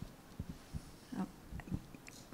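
Quiet pause with a few soft low thumps scattered through it and one brief, faint vocal sound about a second in.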